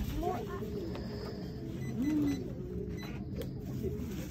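A few brief, quiet voice sounds, one near the start and one about two seconds in, over a steady low background hum.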